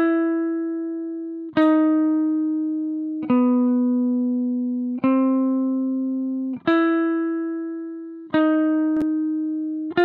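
Jackson electric guitar played clean, without effects: single picked notes, one about every second and a half, each left to ring and fade until the next, moving between a few neighbouring pitches.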